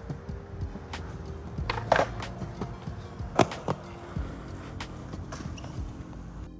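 Skateboard wheels rolling on a concrete skatepark floor: a steady rumble, with a few sharp clacks about two and three and a half seconds in.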